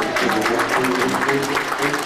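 Upright piano playing a jazz tune while an audience applauds over it.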